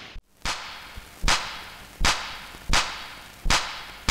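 A run of sharp cracks in an even rhythm, about one every three-quarters of a second, each with a short ringing tail and the first one fainter: a whip-crack-like percussion beat opening a Hindi film song.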